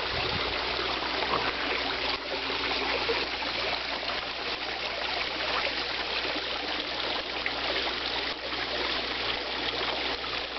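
Koi pond waterfall: water spilling over the rockwork into the pond, a steady splashing trickle.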